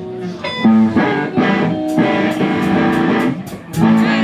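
Electric guitars played through amplifiers, a run of chords and single notes, with a series of sharp ticks in the second half.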